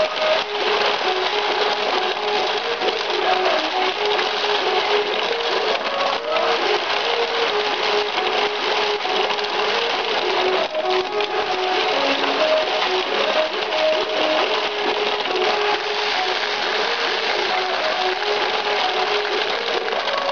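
Ukiyo-e pachinko machine in fever mode: its electronic jingle plays a short repeating melody over a dense, steady clatter of steel balls rattling through the playfield.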